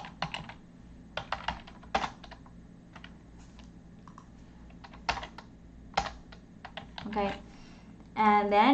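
Typing on a computer keyboard: irregular single keystrokes and short runs of clicks, with pauses between them.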